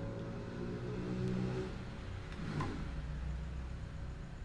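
A final piano chord dies away. About two and a half seconds in there is a short sweeping noise, and a low rumble runs on after it.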